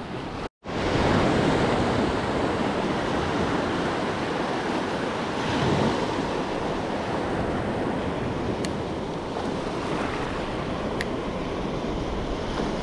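Shallow ocean surf washing and breaking, a steady rushing wash of foamy water. The sound drops out completely for an instant about half a second in.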